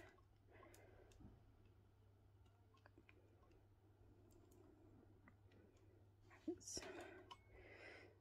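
Near silence, with faint scattered clicks of the tufting gun's small metal parts being handled and adjusted, and a soft rustle of handling about two-thirds of the way through.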